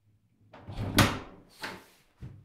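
A wooden door's brass knob and latch being worked and the door opened: a clatter that peaks in a sharp click about a second in, then a second shorter rattle.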